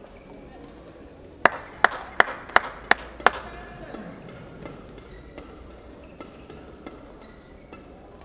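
Badminton rackets striking the shuttlecock six times in a fast exchange, a sharp crack about every third of a second, before the rally ends.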